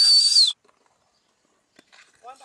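A short, high-pitched whistle lasting about half a second, sliding up at its start and dipping at its end, then cutting off abruptly.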